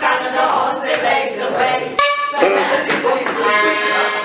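A group of women's voices singing together, with a sharp click about two seconds in followed by a short, steady held note.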